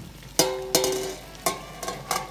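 Plucked-string background music, a few sharp notes that ring briefly, over a faint hiss of water at a rolling boil in a stainless stockpot.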